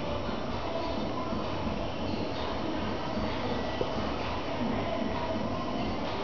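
Steady rumbling background noise with no clear events and no speech.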